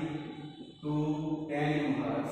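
A man's voice in long, drawn-out syllables held on a steady pitch, almost chant-like, in two stretches with a short break just under a second in.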